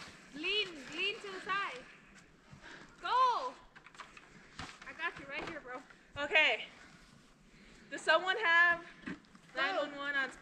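Human voices calling out from a distance: several short calls with quiet pauses between.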